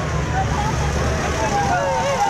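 Low rumble of a large road vehicle's engine going by, with people's voices calling in the background.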